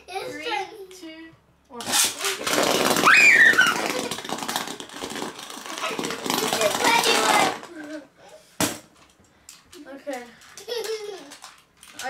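Beyblade spinning tops ripped from their launchers onto a hard plastic box lid, spinning and clattering in a loud, dense rattle that starts suddenly and stops abruptly after about six seconds. A single sharp click follows.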